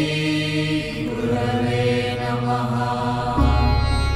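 Chanted mantra over music, the voice holding long steady tones; a deep, low drone comes in near the end.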